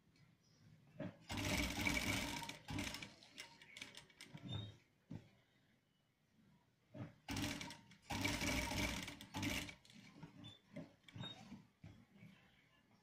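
Sewing machine stitching a pocket onto a shirt front in two runs, one of just over a second about a second in and one of about two seconds past the middle, with small clicks between.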